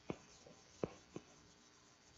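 Chalk tapping and scraping on a blackboard as equations are written: four short, sharp clicks, the loudest a little before the middle, over faint room hiss.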